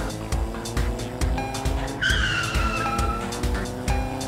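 Background music with a steady beat, joined about halfway through by a video-game style tyre-squeal sound effect: a high screech that falls slightly in pitch for just over a second.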